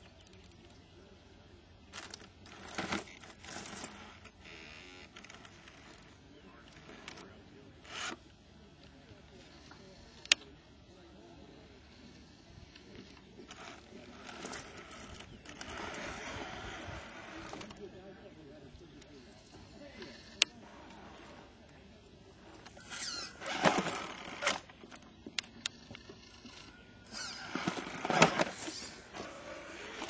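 Axial SCX10 RC rock crawler picking its way over rock: scattered scrapes and clicks of tyres and chassis on stone. A longer stretch of motor and tyre noise comes about halfway through, and two sharp single clicks stand out about ten and twenty seconds in.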